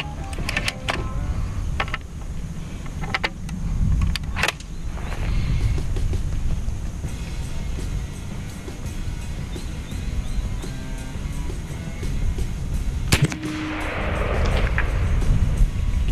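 Background music over a few sharp clicks as the .72 caliber AEA Zeus PCP air rifle is handled and readied, then a single sharp report of the rifle firing about thirteen seconds in, followed by a short hiss.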